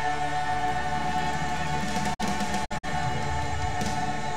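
Church choir with keyboard and guitar holding one long sustained chord at the close of a worship song. The sound cuts out completely for a split second twice just past the middle.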